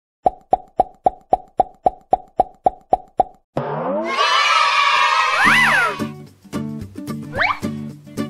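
Intro sound effects: a run of about a dozen quick, evenly spaced pitched plops, roughly four a second, then a bright swirling whoosh with gliding whistle-like tones. At about six seconds this gives way to upbeat children's music with a steady beat.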